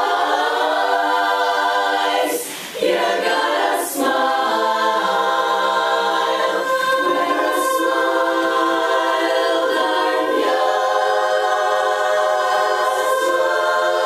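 Women's chorus singing a cappella in close harmony, moving through held chords, with a short break between phrases about two and a half seconds in.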